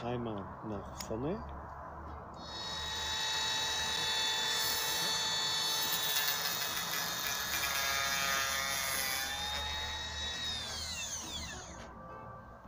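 Cordless roof-batten milling machine for gutter-bracket recesses. Its motor and milling head start a couple of seconds in and run with a steady high whine, then spin down with a falling pitch near the end.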